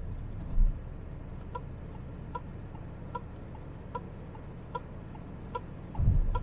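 Steady low engine and road hum inside the cabin of a Peugeot 5008 with its 1.6-litre turbo four cruising on the expressway. Over it, a short electronic tick repeats evenly about every 0.8 s, like the car's turn-signal indicator.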